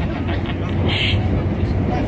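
Steady low rumble of a Shinkansen bullet train heard from inside the passenger cabin, with a short hiss about halfway through.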